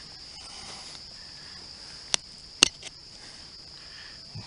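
Steady high insect chorus. Around the middle, two sharp clicks about half a second apart, the second the louder, with a faint third just after: a hand-made metal digger striking stones while loosening hard, rocky soil around a ginseng root.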